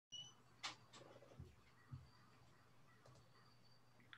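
Near silence: faint room tone with a low hum, a brief faint high beep at the very start and a few faint clicks.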